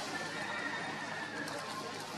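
Baby long-tailed macaque giving a high, drawn-out cry that falls slightly and lasts just over a second, then a shorter, lower note near the end.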